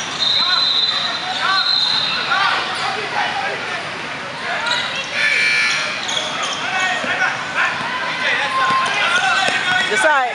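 Indoor basketball game: a ball dribbling on the court under overlapping shouts and chatter from players and spectators, echoing in a large gym. A high, steady squeal runs for about two seconds near the start, and shorter ones come about five seconds in.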